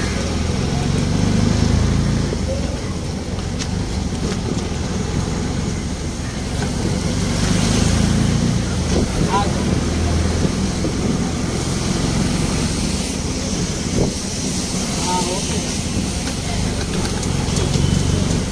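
Low engine drone of a vehicle moving through a busy street, rising and falling, with people's voices in the background.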